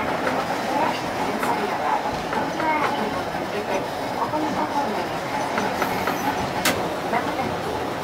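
Toyohashi Railway tram running on street track, heard from the driver's cab: a steady rumble of wheels and nose-suspended traction motors. A single sharp click late on.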